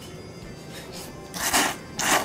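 A person slurping thick tsukemen noodles out of the dipping-soup bowl, with two loud slurps in quick succession near the end.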